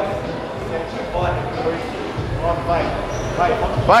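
Men talking in a gym, the words not clearly made out, ending with a shouted "Vai!"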